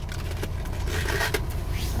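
Steady low hum of a car cabin, with faint rustling and scraping as a handbag is brought out and handled.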